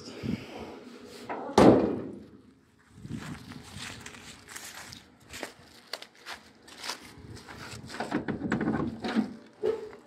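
The steel trunk lid of a 1965 Chevrolet Impala is shut with one loud thud about a second and a half in. Footsteps over dry leaves and grass follow as someone walks alongside the car.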